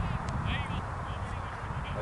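Outdoor field ambience: wind rumbling on the microphone, with distant voices and a short, wavering high-pitched call about half a second in.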